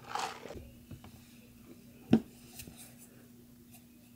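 A plastic bowl set down on a tabletop: one sharp knock about two seconds in, followed by a few faint small clicks, over a faint steady low hum. A brief rustle at the start.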